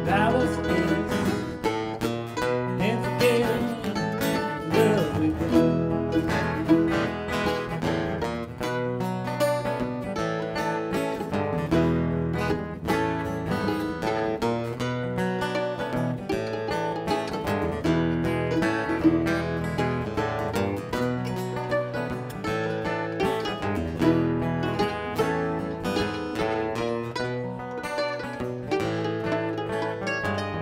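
Two acoustic guitars and a mandolin playing a live bluegrass-style tune together, with quick picked notes over strummed chords.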